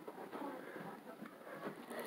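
Faint, indistinct voice of the other person on a phone call, coming through the phone's speaker.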